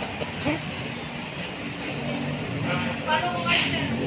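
Road traffic: a motor vehicle's engine running, growing louder over the last two seconds.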